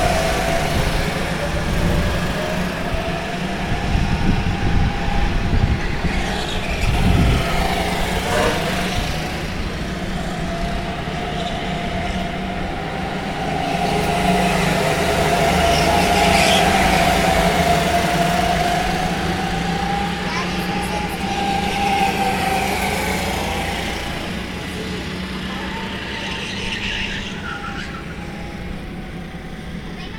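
A pack of go-karts racing past, their motor note whining and rising and falling in pitch as they come through the corners. It is loudest about halfway through, then fades toward the end as the karts draw away.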